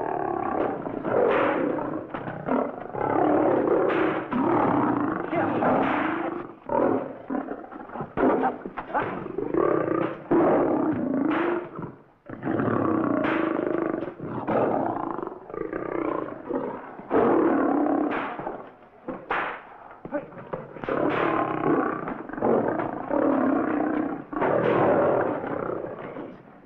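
Several lions roaring and snarling almost without pause, with sharp cracks now and then.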